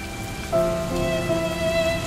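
Slow, sad background music of long held notes, a new chord coming in about half a second in, over a steady rain sound effect.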